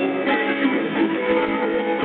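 Rock band playing live, with an electric guitar line to the fore over the rest of the band.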